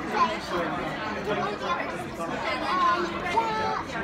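Overlapping chatter of several people talking at once, a steady murmur of diners' voices in a busy restaurant.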